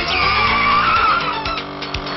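Cartoon sound effect of a scooter's tyres screeching in a skid, a wavering squeal that starts suddenly and falls in pitch at first, over background music.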